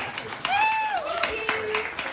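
Hand clapping from a small audience as a song ends, uneven and spread out, with a voice calling out about half a second in.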